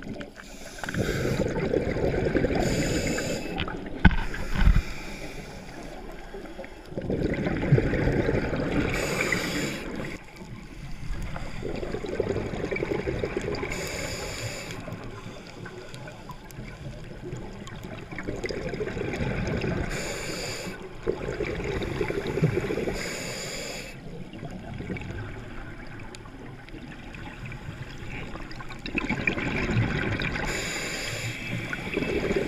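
Scuba diver breathing through a regulator underwater: spells of bubbling exhalation that swell and fade every five to six seconds, with fainter hissing between them. Two sharp knocks about four seconds in.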